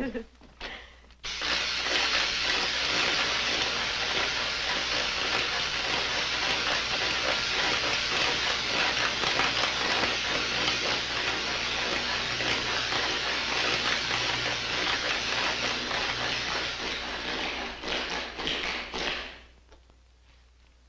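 Laboratory electrical apparatus crackling steadily over a low hum, cutting off suddenly near the end as the switch panel is worked.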